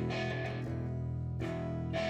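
Guitar strumming chords that ring on between strokes, with a fresh strum about a second and a half in.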